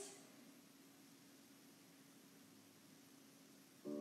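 Near silence: room tone with a faint steady hum. Piano music starts just before the end.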